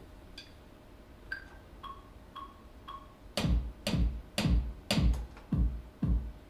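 Metronome count-in of four pitched clicks, the first one higher, then an electronic drum beat starting with strong kick-drum hits about two a second, played on a drum-pad controller to begin a live loop.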